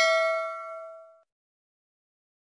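A bell-like ding from a subscribe-button animation's notification-bell sound effect, fading out and gone a little over a second in.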